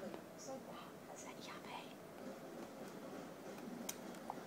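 Faint whispering.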